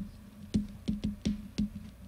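Slow typing on a computer keyboard: single key clicks about three a second, over a steady low electrical hum.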